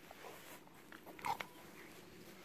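Golden retrievers play-fighting, with one short yelp from a dog a little over a second in.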